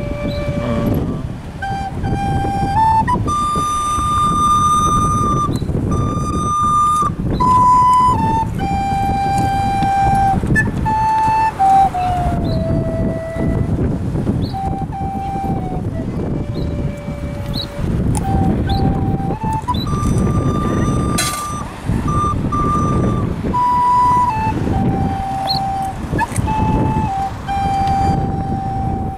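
A tin whistle playing a slow tune of clear held notes, each lasting about a second, with street traffic rumbling underneath.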